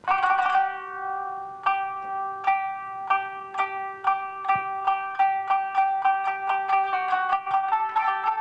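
Instrumental music played on a plucked string instrument, starting abruptly, with a held low note underneath and plucked notes that come faster and faster.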